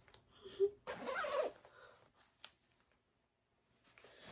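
A jacket zipper being pulled about a second in, with a few small clicks of clothing being handled. The sound then drops to dead silence near the end.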